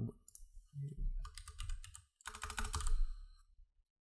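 Typing on a computer keyboard: two quick runs of keystrokes, the second about halfway through.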